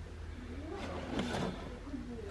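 Quiet indoor room tone: a steady low hum with faint voices in the background and light handling of a cardboard model-kit box.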